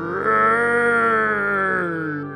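A long, drawn-out monster groan voiced for a Frankenstein-style puppet: one held note that sags slightly in pitch and fades near the end.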